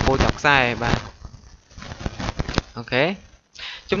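Only speech: a voice talking in short phrases with pauses between them.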